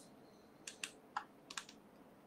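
Faint, irregular clicks of keys on a computer keyboard, about five light taps in quick succession.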